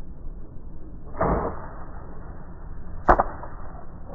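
Bow shot at a wild boar: a single sharp crack about three seconds in, the loudest sound, from the arrow being loosed and striking. A duller, noisier thump comes about a second earlier.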